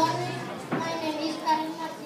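Chatter of many children's voices, with a sharp knock a little under a second in.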